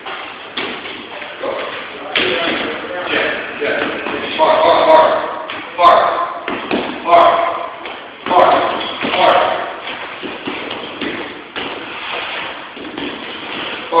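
Punches landing on a hanging heavy bag: about half a dozen hard thumps roughly a second apart, with voices.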